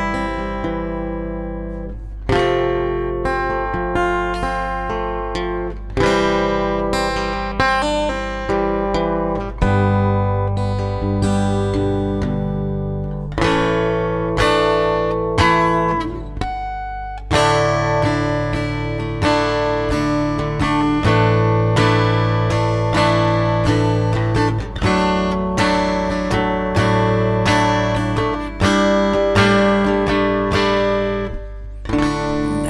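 Acoustic guitar played alone: chords strummed and left to ring, with a new chord roughly every one to two seconds.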